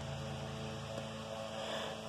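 Steady low hum with a faint hiss under it, unchanging throughout: the room's background tone.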